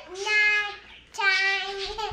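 Young girls' voices calling out in a sing-song: two long, high held notes, one after the other.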